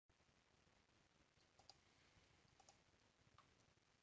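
Near silence: faint room hiss with a few faint short clicks, two quick pairs and then a single one.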